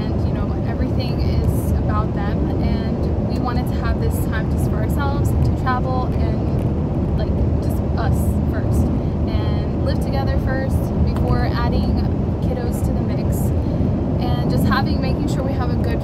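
A woman talking over the steady low road and engine noise of a moving car, heard from inside the cabin.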